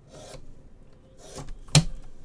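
Hands handling a cardboard trading-card box on a table: short scraping rubs, then one sharp knock near the end, the loudest sound.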